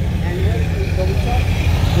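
A V8 performance car idling, its exhaust giving a steady low rumble, with faint voices in the background.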